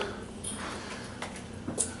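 Steady low hiss of a heating and air-conditioning blower running in an empty room, with no distinct events in it.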